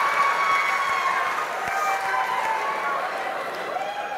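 A large theatre audience laughing, a mass of voices that slowly dies down.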